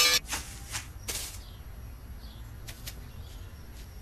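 A small wire hamster wheel breaking: a sharp snap at the start, a few lighter clicks, and a short rattle about a second in, followed by only a couple of faint ticks.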